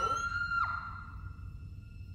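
A person's high-pitched scream held on one steady note, with a shorter cry that falls away under it in the first moment.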